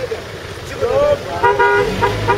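Car horn honking: a steady blast starting about one and a half seconds in, after a moment of voices.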